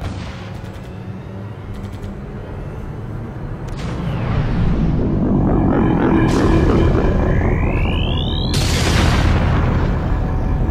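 Film sound effects for an alien gunship over dramatic music: a deep rumble swells about four seconds in as the ship rises into view, a rising whine follows, then a loud sudden blast near the end.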